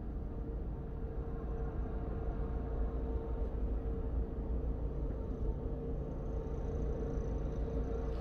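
Steady low rumble with a faint constant hum, heard from inside a parked car.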